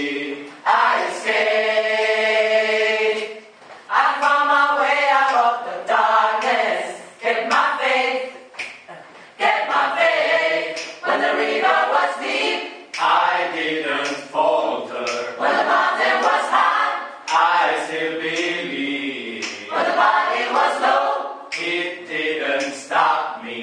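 A mixed gospel choir singing a cappella in close harmony, in phrases of one to three seconds, with a long held chord about a second in.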